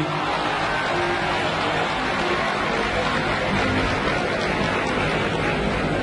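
A concert audience applauding while an Arabic orchestra plays on beneath it, with steady, dense clapping.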